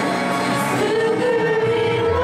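Young female voices singing a Japanese worship song into microphones, with a live band of electric bass and guitar behind them; a long note is held through the second half.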